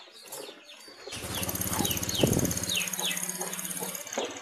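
Honda Vario 125 scooter engine starting about a second in and then running steadily, with short falling bird chirps over it; it stops abruptly at the end.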